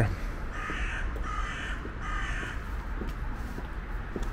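A crow cawing three times in quick succession, over a steady low background rumble.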